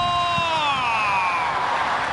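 A male sports commentator's long, drawn-out shout of "oh", held steady and then falling in pitch as it fades, over the noise of a stadium crowd: his reaction to a shot that goes just wide.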